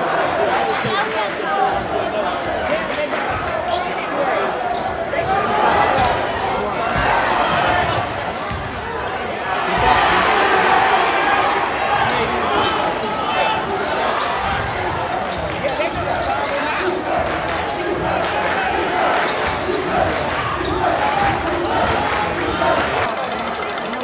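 Crowd noise in a packed high-school gymnasium during a basketball game: many voices shouting and chattering, with a basketball bouncing on the hardwood court. The crowd swells about ten seconds in.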